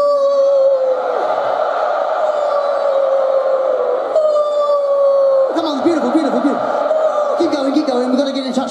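A stadium crowd singing along with a lead singer on one long held note through the PA. The note sags slowly in pitch and is taken up again three times over the massed voices, with shorter wavering vocal phrases coming in near the end.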